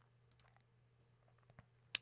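Near silence with a few faint ticks, then one sharp computer mouse click near the end.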